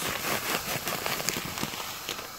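Dry vermicelli strands pattering into a pot of boiling water, many fine ticks over the bubbling, thinning out slightly toward the end.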